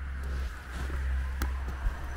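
Low rumble of camera handling and movement on the microphone, with a few short clicks and light rustles as a freshly picked bolete is held up in the hand.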